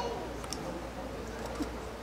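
A short bird call right at the start, over a low steady hum and faint background voices.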